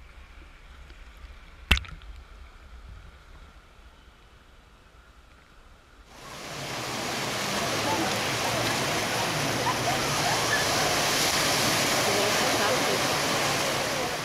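Quiet, muffled underwater hiss with a single sharp click about two seconds in. About six seconds in, the camera breaks the surface of shallow seawater, and a loud, steady rush of water washing over the camera housing takes over.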